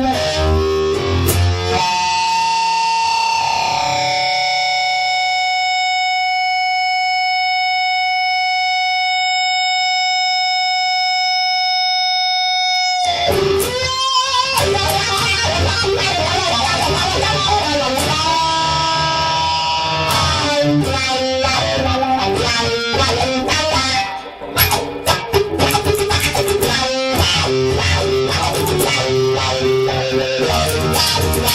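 Electric guitar music from layered Fender Stratocasters and a Telecaster. A single note is held with long sustain for about ten seconds, then the full guitar parts come back in about thirteen seconds in and carry on busily.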